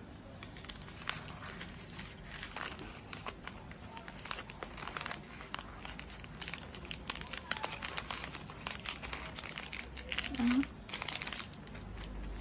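Thin white wrapping paper rustling and crinkling in quick irregular crackles as it is folded and pressed around a small bouquet of paper flowers.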